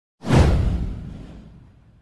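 Intro whoosh sound effect with a deep low rumble. It starts suddenly just after the beginning, sweeps downward and fades away over about a second and a half.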